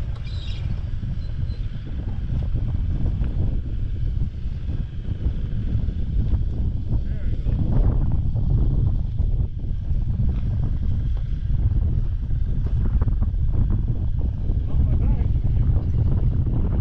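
Wind gusting across the camera microphone, a steady low buffeting rumble that builds stronger over the first several seconds.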